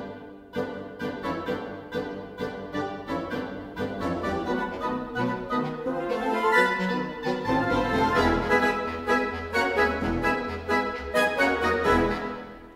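Orchestral woodwind section playing alone: piccolo, flutes, oboes, English horn, clarinets, bass clarinet, bassoons and contrabassoon. The passage is fast and aggressive, with a syncopated back-and-forth rhythm of short staccato chords, rising runs, and full-section chords with low contrabassoon downbeats in the last bars. The final chord rings off at the very end.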